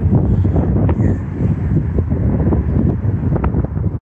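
Wind buffeting the microphone: a loud, uneven low rumble, with a couple of faint clicks.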